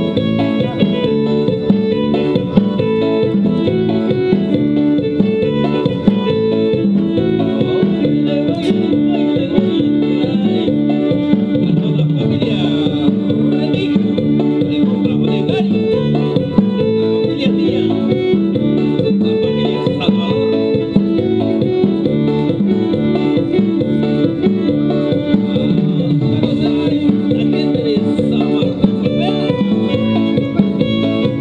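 A live band playing upbeat Mixtec dance music with a steady, even beat throughout.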